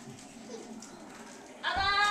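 Quiet room until, about a second and a half in, a toddler lets out a sudden loud, high-pitched scream whose pitch slides downward, still going at the end.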